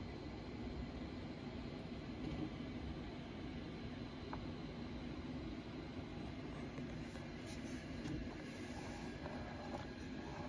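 Steady low background rumble of room noise, with a few faint clicks.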